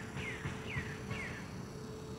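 A bird calling outdoors: short falling chirps, three in a row about half a second apart, stopping about halfway through, over a faint steady hum and low rumble.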